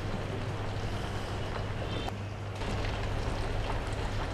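Steady low background hum and hiss, with a faint click a little after two seconds.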